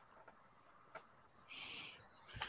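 Near silence, then a short, high hiss lasting about half a second near the end.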